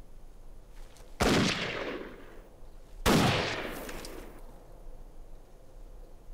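Two rifle shots about two seconds apart, each sharp crack followed by a long echoing decay.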